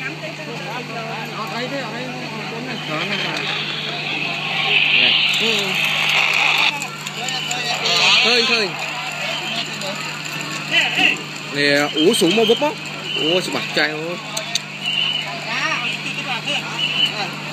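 Several people talking, their voices overlapping, over a steady low hum.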